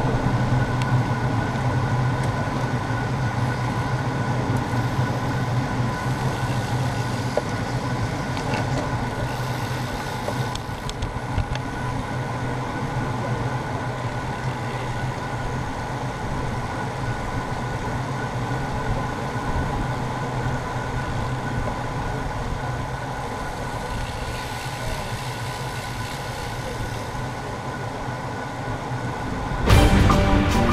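Riding noise from a road racing bicycle in a bunch of riders at speed: wind rushing over the action camera's microphone and tyres on tarmac, a steady low rumble with a faint constant whine over it.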